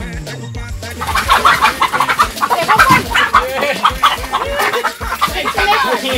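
Chickens clucking and squawking in quick, repeated calls, over background music with a steady beat.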